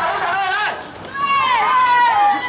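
Protesters shouting in a crowd scuffle with police: two long, high-pitched shouts, the second starting about a second in.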